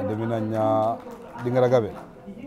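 A man's voice in two drawn-out phrases, held at a steady low pitch: the first lasts about a second, and a shorter one follows near the end.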